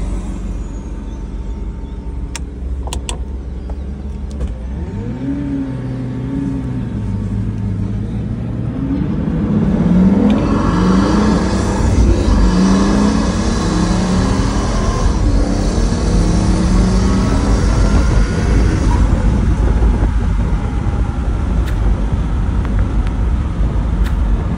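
Pagani supercar's Mercedes-AMG V12 heard from inside the cabin while driving. From about ten seconds in it accelerates and gets louder, its note climbing and dropping again through several gear changes.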